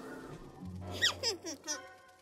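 A cartoon creature's high squeaky chirps: about three quick squeaks, each falling in pitch, about a second in, over low background music.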